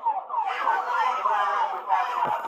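Several police car sirens going at once, their pitch sweeping down quickly and repeating several times a second, overlapping one another.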